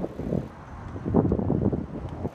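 Wind buffeting the microphone: an uneven low rumble that swells again about a second in.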